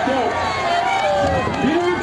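Speech: a voice talking continuously.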